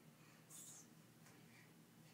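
Near silence: room tone, with a brief faint hiss about half a second in.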